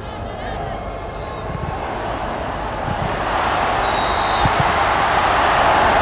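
Large stadium crowd at a football match, its noise swelling steadily louder as an attack reaches the goalmouth.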